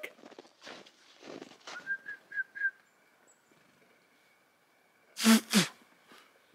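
Four short whistled notes on one pitch in quick succession, then near-quiet with a faint high chirp. A brief loud vocal exclamation comes near the end.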